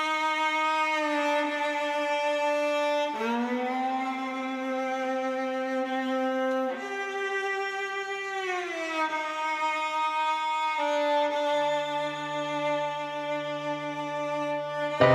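Viola playing slow, long bowed notes that change pitch every few seconds, sliding into some of them. In the last few seconds a lower held note comes in underneath.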